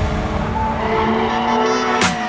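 A drift car's engine held at high revs, its pitch climbing slowly as the car slides through the course.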